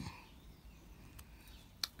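Quiet room tone with a soft low sound at the very start and a single sharp click just before the end.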